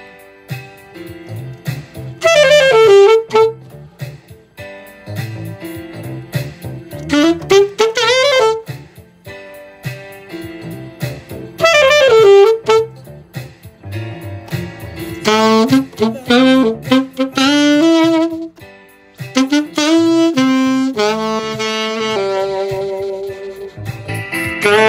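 Alto saxophone playing the melody of an R&B/smooth-jazz tune in phrases. They start with rising runs and falling scoops, quicken into fast note runs in the second half and end on a long held note.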